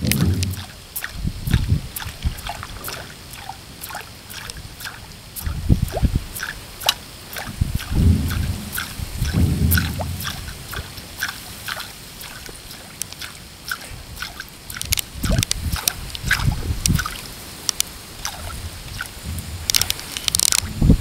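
Pencil-bait topwater lure twitched across the water surface: small, irregular splashes and plops with many scattered sharp clicks, and a few low thumps along the way.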